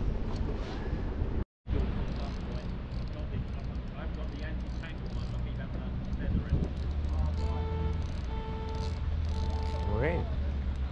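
Low, steady rumble of wind and water on the microphone of a kayak on open water, broken by a brief silent dropout about a second and a half in. Near the end, three steady held tones sound in a row.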